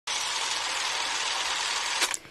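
A steady hiss-like noise, static-like and lacking any tone, that starts abruptly and cuts off suddenly, laid over the programme's opening title card as a transition sound.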